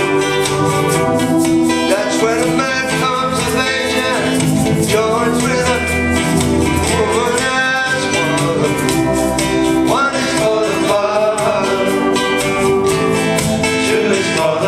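Live folk-rock band playing: electronic keyboards and acoustic guitar over a steady beat, with a lead melody line that glides up and down in pitch.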